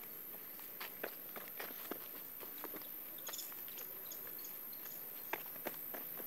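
Faint scattered crunches and clicks of gloved hands and feet working in stony clay soil while a drip-irrigation hose is laid along a row of cabbage seedlings, with a few sharper clicks and some brief faint high chirps a little past the middle.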